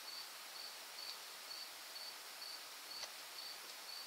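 Faint, steady chirping of an insect: a short high chirp repeated about twice a second, with one soft click about three seconds in.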